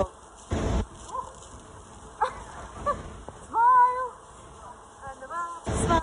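A woman's voice making brief wordless sounds, one held for about half a second just past the middle, with two short bursts of noise, one near the start and one at the end.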